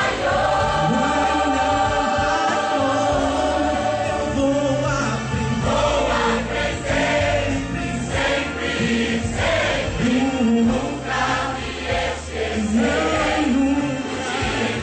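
Church choir singing a gospel song together with a male soloist on a microphone, over instrumental accompaniment with a steady bass line.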